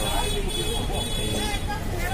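Busy outdoor market ambience: people's voices talking over a steady low rumble of road traffic.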